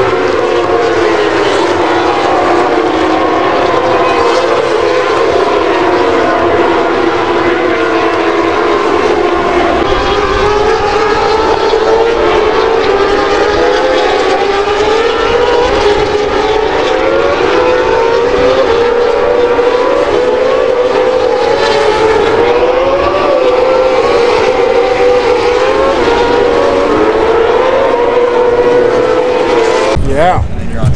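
Several MotoGP racing motorcycles running at high revs around the circuit: a continuous overlapping engine whine that keeps rising and dropping in pitch with each gear change.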